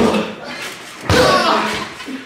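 Thud of a body landing on a trampoline mat right at the start, then another thump about a second in, followed by a voice.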